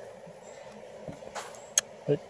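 Faint, steady rush of river water, with two brief clicks in the second half.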